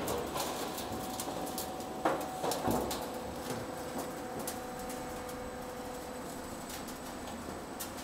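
Ridge cap roll forming machine running: a steady mechanical hum with a faint steady whine, and a couple of light knocks about two and three seconds in.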